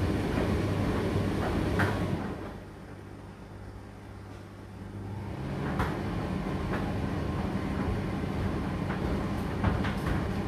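Indesit IDC8T3 condenser tumble dryer running mid-cycle: a steady motor and drum hum with occasional knocks. About two seconds in the running drops away to a quieter hum for about three seconds, then picks up again.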